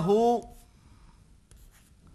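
Chalk writing on a chalkboard: faint scratches and taps of the strokes. They come after a man's spoken word trails off at the start.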